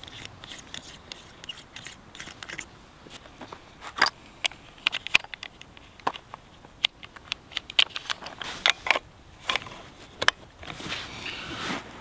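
Brass 6.5 Creedmoor cartridges being pressed one at a time into a rifle's detachable box magazine: irregular sharp metallic clicks and scrapes, a few a second. They follow a row of small, closely spaced clicks as the scope turret is turned.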